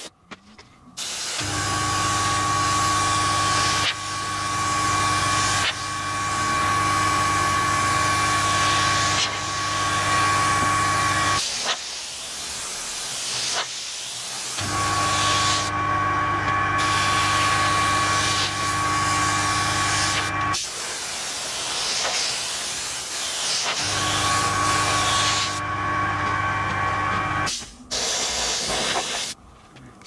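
Airbrush spraying paint: a steady hiss of air with a small compressor's motor humming and whining beneath it. It comes in three long spells that stop about eleven seconds in, about twenty seconds in, and a couple of seconds before the end.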